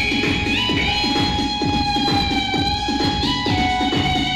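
Instrumental music from a band playing a jatra song, without singing: a melody of long held notes that step to new pitches a few times, over a steady, quick drum beat.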